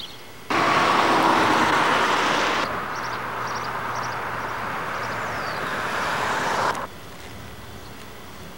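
A steady, loud rushing noise with no clear pitch that starts abruptly about half a second in, drops in level a couple of seconds later, and cuts off abruptly near the end, with small birds chirping faintly over it.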